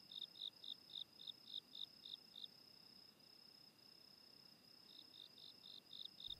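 Faint cricket chirping: a quick run of short, high pulses, about five a second, that stops about two and a half seconds in and starts again near the end.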